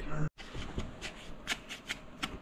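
Hands rubbing and rustling a paper towel over the plastic housing of a car's radiator-fan relay module as it is wiped, with a few light clicks.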